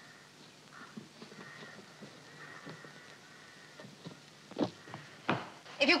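Footsteps approaching on an outdoor path: faint scattered scuffs, then two sharper steps near the end.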